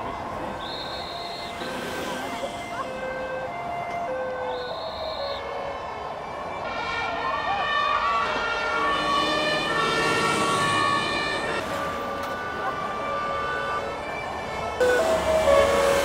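Two-tone sirens of emergency vehicles, a fire engine and an ambulance, alternating high and low notes about once a second. In the middle several sirens overlap at different pitches, and near the end one comes louder and closer.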